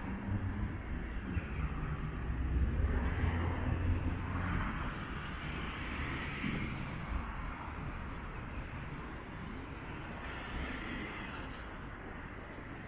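City street traffic: a low vehicle rumble, loudest over the first few seconds, easing to a steady background of passing cars and tyre noise.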